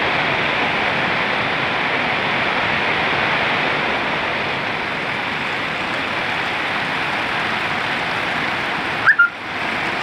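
Heavy rain falling steadily, with water pouring off a roof edge. About nine seconds in comes one brief, loud high chirp, and the sound drops out for a moment before the rain resumes.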